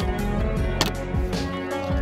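Background music with sustained notes, and one short click a little under a second in.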